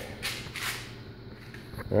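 Faint rustling and handling noise from movement over low background noise, with no distinct tool sound.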